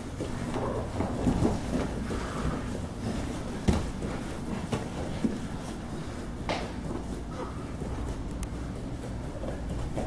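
Grapplers' bodies scuffling and shifting on a padded gym mat, with a few short thumps, the loudest almost four seconds in, over a steady low background rumble.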